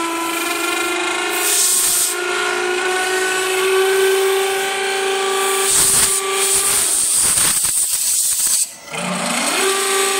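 Horizontal deep-hole drilling machine boring a long twist drill into a spinning wooden wind-instrument blank, with a steady, high whine throughout and repeated bursts of compressed-air hiss from a blow gun clearing chips from the drill. Near the end the sound briefly drops away, then the whine climbs back up in pitch.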